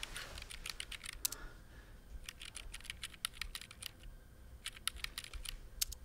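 Faint typing on a computer keyboard: quick runs of key clicks in three bursts with short pauses between, as someone looks up a record on a computer.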